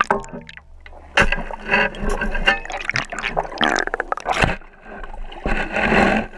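River water sloshing and gurgling around a shovel blade as it is pushed down into the riverbed, heard through the submerged camera on the blade, with irregular knocks and scrapes throughout.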